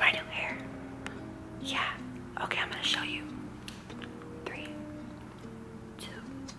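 Soft instrumental background music with held notes, with a few short breathy whispers or mouth sounds over it, about two and a half and four and a half seconds in.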